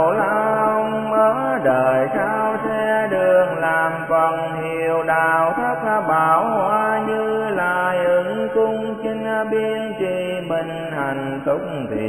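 Buddhist devotional chant music: a melodic vocal chant with long, gliding notes over steady sustained accompaniment.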